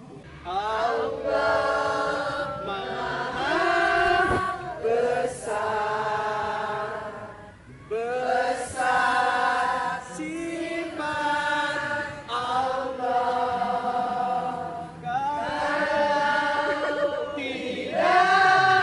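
A group of women singing a chant together in unison, without instruments, in short phrases of held notes.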